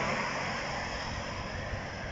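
Outdoor background noise: a steady low rumble under a hiss, slowly fading, with no clear single event.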